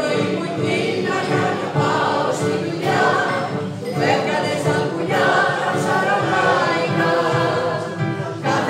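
A mixed choir of men's and women's voices singing a popular Greek song to electronic keyboard accompaniment, in phrases with brief breaks.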